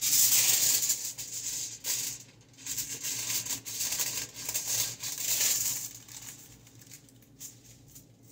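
Aluminium highlighting foil crinkling and rustling close by. It starts suddenly and comes in repeated loud surges for about six seconds, then dies down, with one short rustle near the end.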